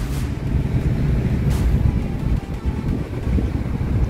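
Car driving slowly over beach sand, heard from inside the cabin: a steady low rumble of engine and tyres, with a couple of faint knocks.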